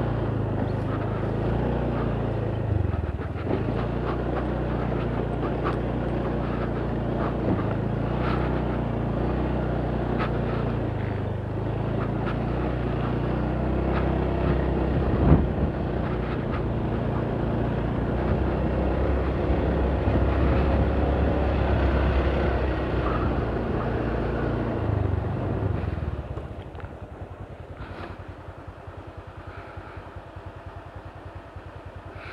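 Motorcycle engine running as the bike is ridden over a rough dirt track, its pitch rising and falling with the throttle, with one sharp knock about halfway through. About 26 seconds in it drops to a quieter, evenly pulsing idle.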